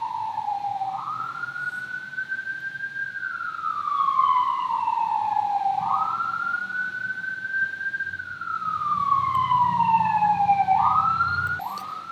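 Fire engine siren wailing in slow sweeps, each falling over a few seconds and then jumping back up, about three cycles, with a low engine rumble building in the second half.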